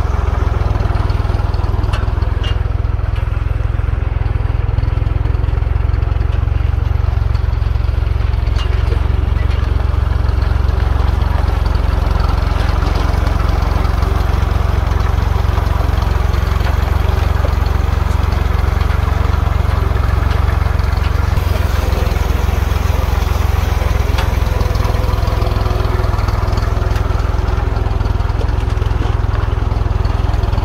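Small tractor's engine running steadily while driving, a loud, even low drone with no changes in speed.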